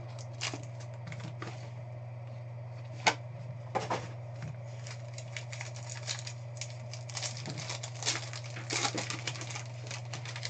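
Hands handling a cardboard trading-card hobby box and its pack: scattered taps and clicks, a sharper click about three seconds in, and a run of crinkling near the end as the pack is worked open. A steady low electrical hum runs underneath.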